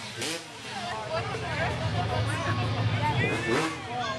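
Motocross dirt bike engine running steadily at low revs, under the chatter of nearby spectators.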